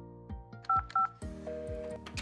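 Two short telephone keypad tones (DTMF dual-tone beeps) about a third of a second apart, from the Fanvil door-entry intercom call, over background music with a steady beat.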